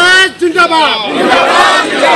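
Political slogan shouting: one man yells a long, drawn-out call and a group of men shout the answer back together.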